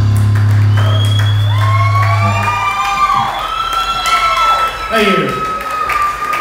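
A live rock band's final held chord rings out and fades about halfway through, giving way to a small crowd cheering and whooping. A long high steady tone is held through the second half.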